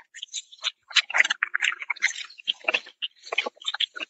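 A plastic bag crinkling and rustling in quick irregular bursts as it is rubbed over a horse's neck and back, to get the horse used to it.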